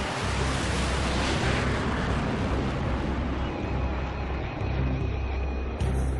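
Jet roar of two McDonnell Douglas CF-18 Hornet fighters taking off, a dense rushing noise that swells about a second in and falls in pitch as it fades.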